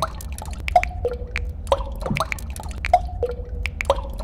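Water drops plinking in a steady repeating pattern, a higher ringing note followed by a lower one about once a second, among scattered small ticks and clicks over a low hum.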